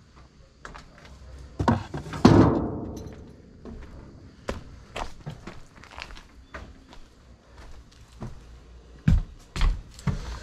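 Junk thrown into a steel roll-off dumpster lands with two thuds about two seconds in, the second the loudest and ringing on briefly in the metal bin. After that come light scattered steps and knocks, and two heavier thumps near the end.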